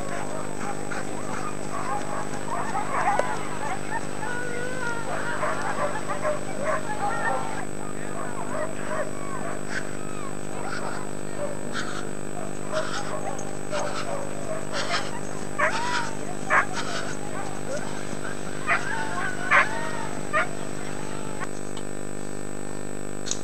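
Dogs barking and yelping: a run of short wavering calls in the first several seconds, then scattered sharp barks in the second half, over a steady mechanical hum from the camcorder.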